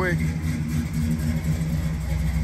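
1970 Oldsmobile Cutlass engine idling steadily.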